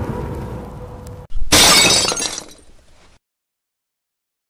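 Outro sound effects: the fading tail of a sound effect from the animation before, then, a little over a second in, a sudden crash of shattering glass that rings out and dies away.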